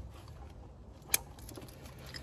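Quiet handling of gear at a backpack, with one sharp click about a second in.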